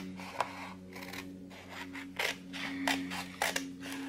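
Scissors snipping through a sheet of planner stickers: a series of short, sharp cuts spread over a few seconds.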